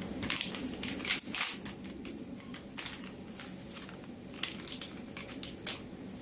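Paper tissue being crumpled and rustled in the hands, a run of short, irregular crinkling sounds.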